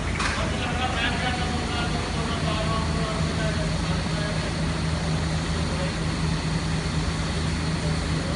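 Steady low mechanical hum, with a steady tone growing stronger about two and a half seconds in, under faint men's voices.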